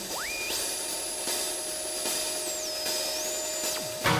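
Synthesized electronic tone sweeping up to a high, drill-like whine, holding, stepping down and back up, then dropping away sharply near the end, over a steady lower hum.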